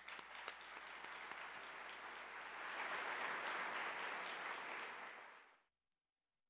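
Audience applauding, building to its fullest after a couple of seconds, then fading and cutting off abruptly a little before the end.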